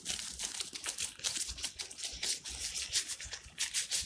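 Rubber-gloved hands rolling and pressing bread dough into a ball: a quick, irregular run of short rubbing sounds as the gloves work the dough.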